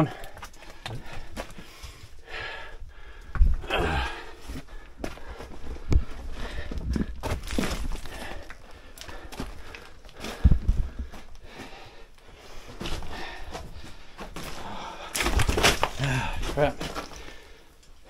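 People scrambling over loose rock and old mine timbers: scuffing footfalls and knocks at irregular intervals, with a few louder thumps, and faint voices now and then.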